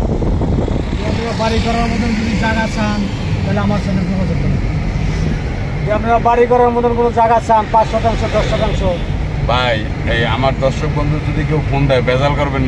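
Steady low rumble of engine and road noise heard from inside the cabin of a moving ambulance, with men talking over it.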